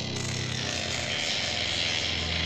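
Music: a harsh, buzzing distorted electric guitar cuts in abruptly at the start, over a low sustained synth drone, as a rock song begins.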